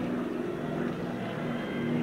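Steady low hum over a hiss of background noise from an old 1960s film soundtrack.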